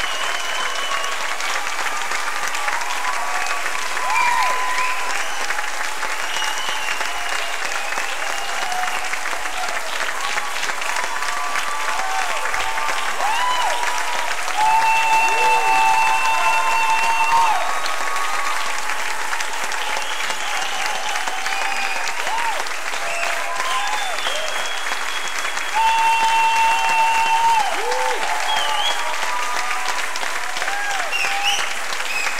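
Audience applauding steadily, with voices calling out over the clapping and louder stretches around the middle and near the end.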